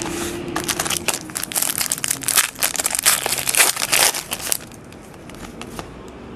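Wrapper of a hockey card pack being torn open and crinkled, a dense crackling that runs for about four seconds, then quieter handling of the cards.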